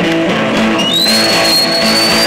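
Live amateur rock band playing an instrumental passage: electric guitars strumming chords over bass and drums, through PA speakers. About a second in, a thin high whistling tone slides up and holds steady.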